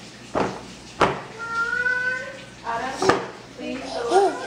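A baby vocalising: one drawn-out, even-pitched coo or squeal of about a second, then a shorter bit of voicing, with a few sharp knocks in between.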